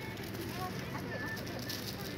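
Faint, distant voices over a steady low background hum, with no distinct nearby event.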